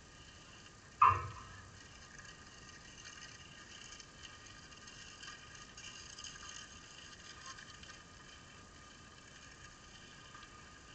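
A tennis ball struck once by a racket, a single sharp pop about a second in, followed by faint outdoor background hiss.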